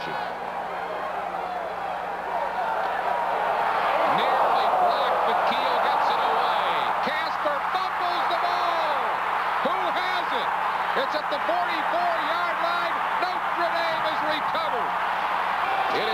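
Stadium crowd at a college football game cheering, a dense mass of many voices that swells about four seconds in and stays loud, over a faint steady low hum.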